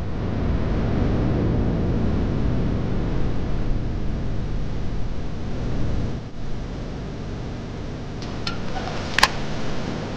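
Wind blowing hard in a mountain snowstorm, a steady rushing noise that drops briefly about six seconds in. Near the end come a few short scrapes and one sharp clack as avalanche shovels dig into snow.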